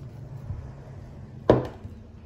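A single sharp knock about one and a half seconds in: a heavy art glass owl paperweight set down or bumped against a wooden surface, with a faint tick or two of handling before it.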